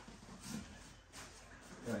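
Quiet movement noise from a person shifting out of a low stance and stepping on foam training mats, with a few soft rustles.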